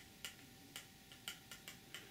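Faint, irregular light clicks and ticks as tomato seeds are taken out of their small container by hand.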